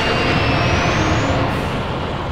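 Loud, sustained rumbling roar of a cartoon battle sound effect, with a thin whine rising in pitch over the first second and a half. It eases off a little toward the end.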